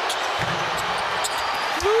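Basketball arena crowd noise during live play, with a few short knocks and squeaks from the court. Near the end a commentator's rising, held "Woo!" comes in.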